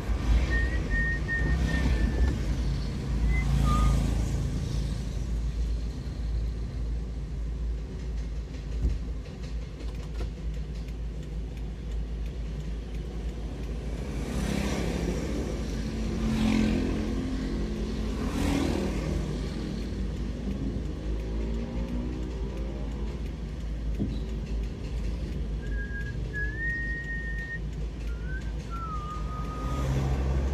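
Steady low rumble and road noise of a vehicle driving in town traffic. Around the middle an engine's pitch rises and falls as it speeds up. A few short high whistled notes that step in pitch come near the start and again near the end.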